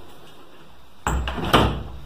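Wooden bathroom door being shut: two knocks about half a second apart, the second louder.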